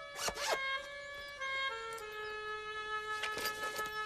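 A backpack zipper pulled open in short rasps, once near the start and again about three seconds in, over soft sustained background music.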